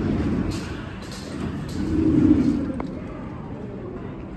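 Ambient noise of a large airport terminal hall: a steady low rumble with indistinct background voices. The rumble swells to its loudest about two seconds in.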